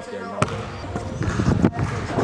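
A basketball bouncing on a hardwood gym floor: one sharp bounce about half a second in, then several quicker thuds near the end.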